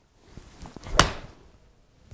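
Golf iron striking a ball off an artificial-turf hitting mat: one sharp crack of impact about a second in.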